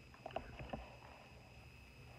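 A person chewing a soft chocolate-coated caramel snack cake close to the microphone, with a cluster of short wet mouth clicks in the first second.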